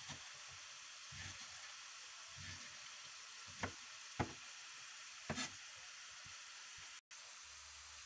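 Kitchen knife cutting peeled mango into cubes on a wooden chopping board: about three light taps of the blade on the board in the middle, over a faint steady hiss.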